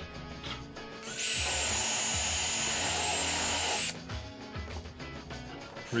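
Cordless drill boring a dowel hole into the end grain of a board through a doweling jig's guide bushing: it runs steadily with a high whine for about three seconds, then stops as the bit's stop collar reaches the bushing.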